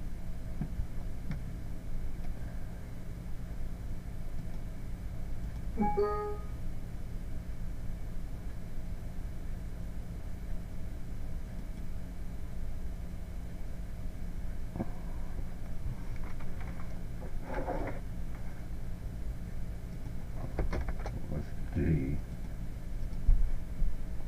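Steady low electrical-sounding hum, with a man's short laugh about six seconds in and a few brief faint clicks and soft noises later on.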